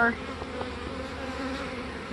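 Honeybees buzzing around open hives, a steady low hum.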